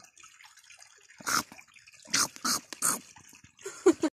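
Shallow stream water around bare feet standing in it: a faint trickle with four or five short splashes and drips from about a second in.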